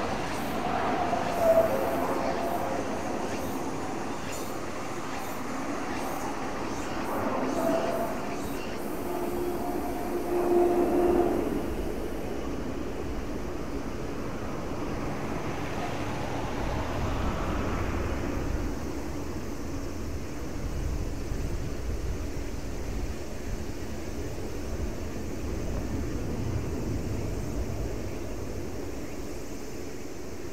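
Distant aircraft engine noise at an air base: a steady drone with wavering mid-pitched tones over the first several seconds, giving way to a deeper rumble from about halfway through.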